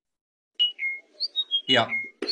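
A songbird singing: a quick run of short, clear whistled notes at several different pitches, starting about half a second in.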